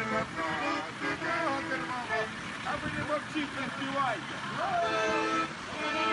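Car horns honking in long held blasts, several sounding together, with people's voices calling out in between around the middle.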